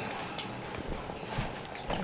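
Ducklings dabbling in a plastic bowl of water: irregular soft clicks and taps of their bills against the bowl and in the water as they feed on bloodworms.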